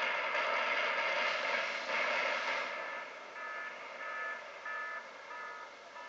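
Building implosion heard through a TV speaker: the demolition of the 13-story Warren Hall comes as a steady rush of collapse noise that fades after about three seconds. Four short, evenly spaced beeps follow.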